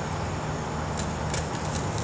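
Knife slicing an onion into rings on a cutting board, giving a couple of faint taps about a second in, over a steady low background rumble.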